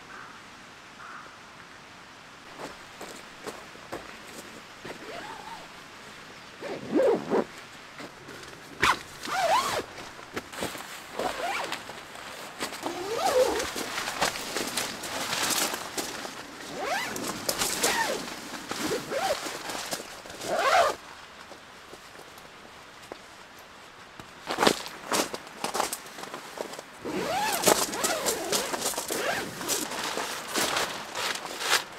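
Tent door zippers being run open in a series of short pulls with brief pauses between them, mixed with the rustle of nylon tent fabric as the door and mesh panels are handled. The first few seconds are quiet, and the zipping gets busier near the end.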